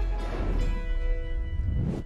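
TV news weather-segment intro music: held tones over deep bass, with a swell that builds near the end and cuts off as the forecast begins.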